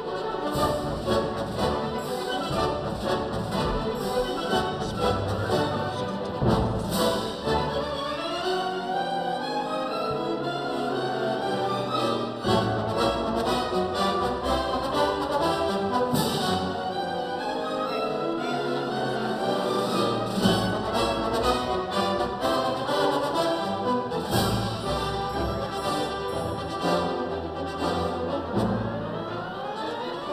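Orchestral processional music with prominent brass, trombones, trumpets and horns, playing continuously.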